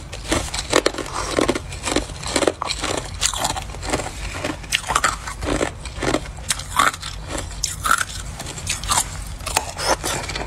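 Hard ice being bitten and chewed close to the microphone: an irregular run of sharp crunches and cracks, several a second.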